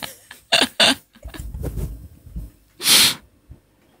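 Laughter in short breathy bursts close to a studio microphone, with a low rumble in the middle and one loud breathy burst about three seconds in.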